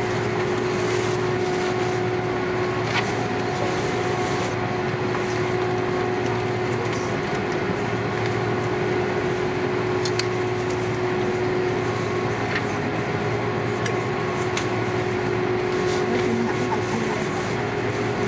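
Steady cabin hum of an Airbus A330-243's Rolls-Royce Trent engines at idle, heard from a window seat at the wing, before the take-off roll, with no rise in pitch. A few faint clicks sound now and then.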